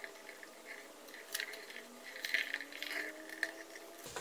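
Faint crackling and sizzling of flux and molten solder as a soldering iron tip melts solder onto a small relay's terminal, with a few soft ticks.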